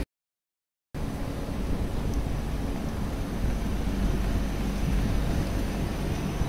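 About a second of dead silence at an edit, then a steady low rumble and hiss of a railway platform right beside a standing passenger train.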